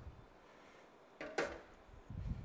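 A single sharp metallic clatter about one and a half seconds in: a metal roasting tin put down on a stainless steel kitchen counter.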